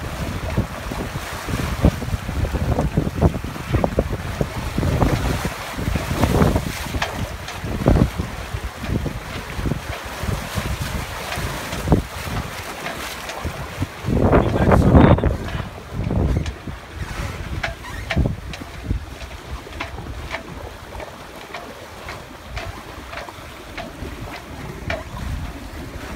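Wind buffeting the microphone over the rush and splash of water along the hulls of a Farrier 720 trimaran sailing at about six knots, rising and falling unevenly, with a louder surge a little past halfway.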